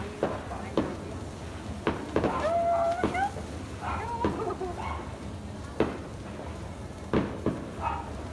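Firecrackers going off in sharp, irregular cracks about once a second, with a drawn-out wavering call partway through.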